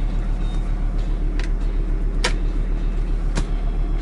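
VW T4's five-cylinder engine idling steadily, heard from inside the cab. Three light clicks, about a second apart, come as a smartphone is pushed into a dashboard holder.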